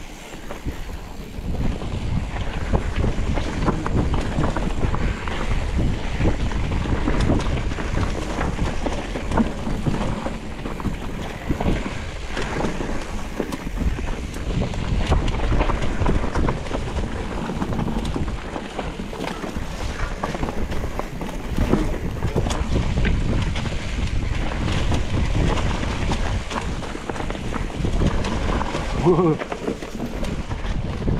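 Mountain bike riding down a dirt singletrack: steady wind rushing over the action camera's microphone, with constant small knocks and rattles from tyres and bike over rough ground.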